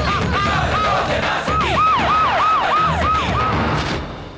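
A siren wailing over a low rumble, its pitch rising and falling in repeated cycles. About a second and a half in, the cycles become quicker, sharper yelps, roughly four a second.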